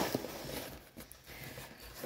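Faint rustling of a rolled diamond painting canvas being handled, with a few soft taps, fading within the first second or so.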